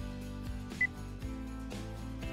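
Light background music with a steady beat, and a short, high electronic beep a little under a second in: the quiz's countdown timer running out.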